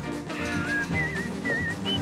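Background music with a whistled tune: a few short, wavering whistled notes, the last ones higher.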